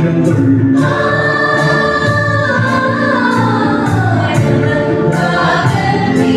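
Choir singing a Christian hymn with male lead vocal and electronic keyboard accompaniment, over a steady beat.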